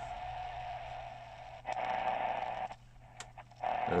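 XHDATA D-368 portable radio's speaker giving out a steady hiss of AM-band static with a constant whine in it, as the band switch is slid to AM. The static cuts out for about a second near the end, with a couple of small clicks, then comes back.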